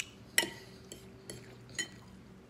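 Metal fork clinking against a bowl of food: a few short, sharp clinks, the loudest about half a second in and another near the end.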